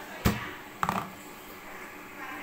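Rice cooker lid being shut: a sharp knock, then about half a second later a click with a brief ringing tone, over a steady hiss.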